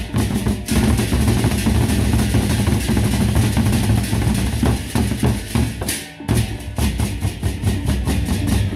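Gendang beleq, the large Sasak barrel drums, beaten rapidly with sticks by several players at once, dense and loud. About six seconds in the beating breaks off briefly, then resumes in sharp, quick strokes.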